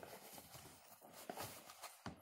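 Faint, irregular small clicks and scrapes of homemade cornstarch play dough being mixed with a spoon and fingers in plastic tubs.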